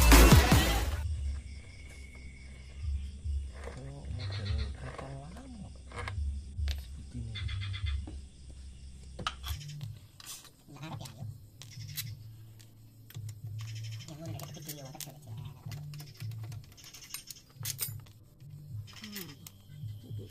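Intro music cuts off in the first second, then scattered metallic clicks and clinks of a hand wrench working the bolts on a Yamaha NMAX scooter's CVT cover. A low hum runs under the second half.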